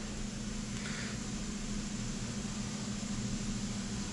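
Steady machine hum with a constant low tone over an even hiss, from shop machinery running at idle.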